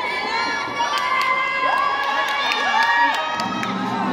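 A crowd of children cheering and shouting, many high voices overlapping. Music starts near the end.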